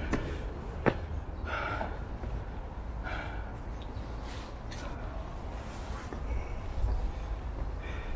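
A person breathing out heavily twice and footsteps on stone stairs, with a steady low rumble on the microphone.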